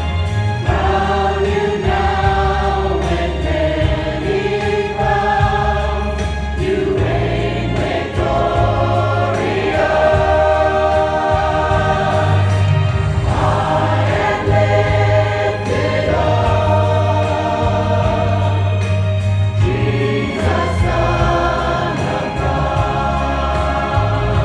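A choir singing a gospel song over an accompaniment with a deep, held bass line, the sung chords changing every second or two.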